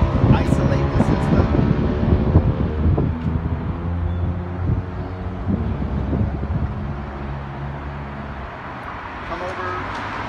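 A steady mechanical hum that fades gradually and stops about eight and a half seconds in, with a few light clicks over it.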